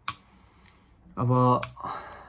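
A sharp click, then quiet, then a single short spoken word followed by another sharp click and a brief breathy noise.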